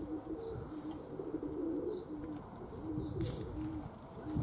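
Domestic pigeons cooing, a series of low, repeated, overlapping coos, with a few faint high chirps.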